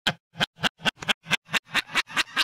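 A man laughing hard in rapid, regular bursts, about four or five a second.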